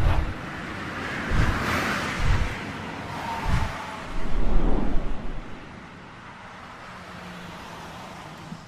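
Animated-intro sound effects: rushing whooshes with several deep booms in the first few seconds, then a low rumble that settles into a quieter low hum near the end.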